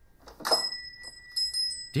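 A small bell struck once about half a second in, ringing on with a clear high tone, with a little light tinkling after it.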